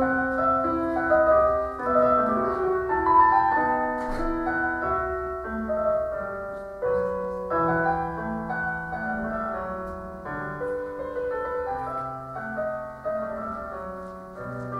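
Piano music: a melody of held notes moving up and down over lower sustained notes, playing steadily throughout.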